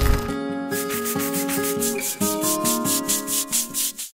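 Background music: held pitched notes that step from one pitch to another over a fast, steady shaker-like beat, with a low bass at the start. It stops abruptly at the very end.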